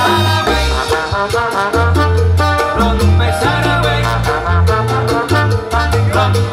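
Live salsa band playing, with a bass line, dense percussion, brass and piano.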